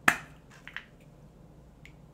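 Handling of a dry texturizing spray can: one sharp plastic click right at the start, then two lighter clicks a little later.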